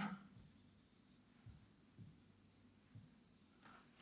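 Faint strokes of a stylus writing on a touchscreen display, with a few soft taps, over near-silent room tone.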